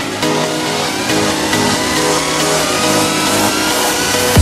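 Electronic psytrance music in a build-up: a synth riser climbs steadily in pitch over a dense, noisy texture.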